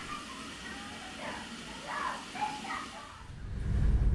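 Quiet background with faint, indistinct voices, then a low rumble swells up near the end.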